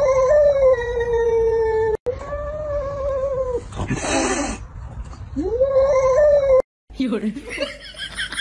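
Domestic cat giving three long, drawn-out yowls, each rising at the start and then held steady: the threat yowl of a cat squaring up to its own reflection as if to a rival. A short breathy burst comes about four seconds in, and the sound breaks off abruptly near the end.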